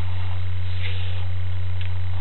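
Steady low electrical hum in the sewer inspection camera's audio, with faint hiss above it.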